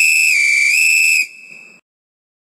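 A single high whistled note, held for just over a second with a brief slight dip in pitch in the middle, then cutting off sharply with a short faint tail.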